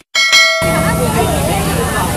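A click and a bright bell ding from a subscribe-button animation sound effect. About half a second in, the fire-scene recording cuts in with crowd voices and street noise.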